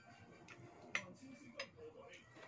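Metal spoon clicking against a ceramic bowl of rice a few times. One sharp click about a second in is the loudest.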